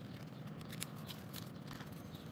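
Sheet of thin white paper being folded into a narrow wedge and pressed flat by hand, giving faint crinkles and a few light crease clicks over a low room hum.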